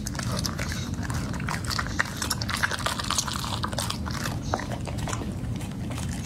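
A chocolate Labrador licking and chewing scraps of food off a plate, a steady run of quick wet clicks and smacks of tongue and teeth, over a steady low background rumble.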